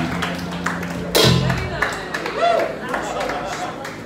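A live band of drums, bass, guitar and digital piano ends a tune: a held low bass note and one loud final hit with cymbal about a second in. The music then stops, leaving scattered voices and room noise.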